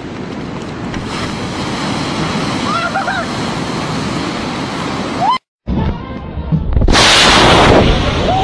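Ocean surf breaking and washing up a beach, with a couple of short shouts from people in the water. It cuts off about five seconds in; near the end a different, much louder rushing blast of noise comes in for under a second.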